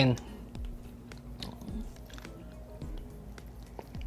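Soft scattered clicks of a metal fork and a plastic noodle tub being handled, over faint background music.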